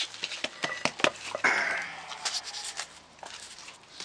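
Scattered dry clicks and knocks, with a short rustling scrape about a second and a half in, as sticks and debris on a barn floor are shifted.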